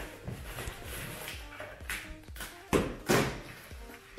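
Packing tape and cardboard being torn off a large carton by hand, in several short ripping pulls, the loudest in the second half.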